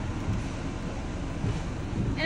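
Steady low rumble and hiss of a car idling, heard with the driver's window down.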